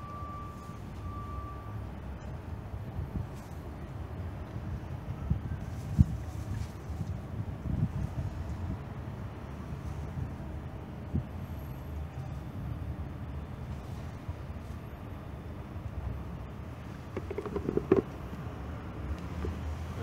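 Motor oil pouring from a plastic quart bottle into a car engine's oil filler neck, over a steady low rumble, with a sharp knock about six seconds in.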